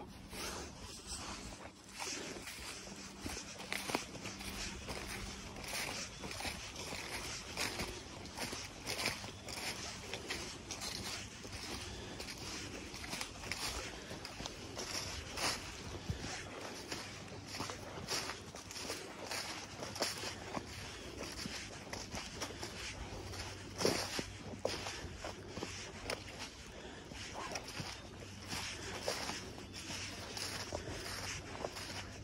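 Footsteps on a woodland trail thick with dry fallen leaves, at a steady walking pace, each step a short rustle.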